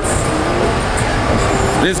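Road traffic on a city street: a vehicle passing close by, a steady rushing noise with a low engine hum in a pause between words.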